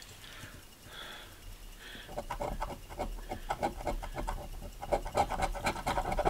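A coin scraping the coating off a scratch-off lottery ticket in quick, short strokes, growing busier from about two seconds in.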